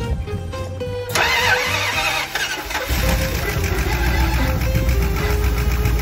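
The van's carbureted engine, fitted with a new hydraulic valve lifter on a worn cam lobe, being started. A loud burst of noise begins about a second in, and the engine settles into a steady low running about three seconds in, over background music.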